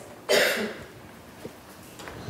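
A person's single short cough, sharp at the start and fading within about half a second.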